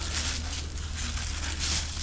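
Thin plastic masking sheeting crinkling and rustling as it is handled and slit along the masking-tape edge with a sharp blade, over a steady low hum.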